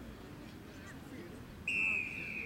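A referee's whistle blown in one short, loud, steady blast that starts near the end and dips slightly in pitch, over faint distant chatter from the sideline.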